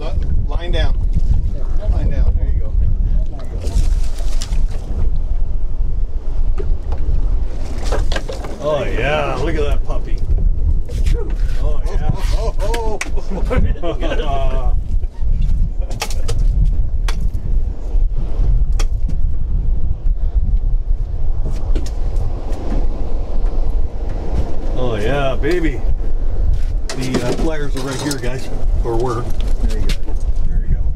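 Voices talking indistinctly in a few short stretches over a steady low rumble of wind on the microphone, with a few sharp knocks.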